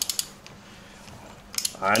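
A few sharp metallic clicks and taps from a ratchet wrench being handled at a motorcycle spark plug on the cylinder head: a cluster right at the start and another just before the end.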